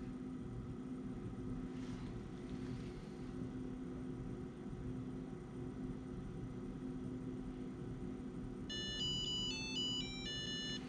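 Low steady hum, then near the end a Nayax VPOS Touch credit card reader plays its startup notification tone, a short melody of electronic beeps, as it begins booting.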